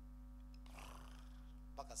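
Steady electrical hum from the sound system. About a third of the way in comes a brief breathy, rustling noise close to the microphone, and a spoken word starts right at the end.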